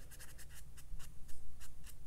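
Paintbrush loaded with thick watercolour swept and dabbed across cold-press cotton watercolour paper: a quick, irregular run of soft, scratchy strokes.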